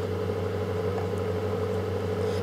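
A steady low background hum with a fainter, higher tone above it, unchanging throughout.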